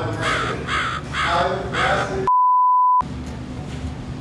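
A crow-cawing sound effect, four caws in quick succession, followed by a single steady high beep of about 0.7 s that blanks out all other sound: a censor bleep.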